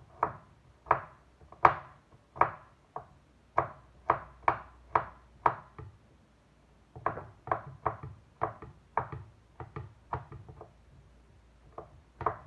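Kitchen knife chopping garlic on a wooden cutting board: sharp knocks at about two a second, a pause a little past halfway, then a quicker run of chops.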